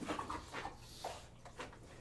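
A dog panting faintly, with small irregular breathy noises.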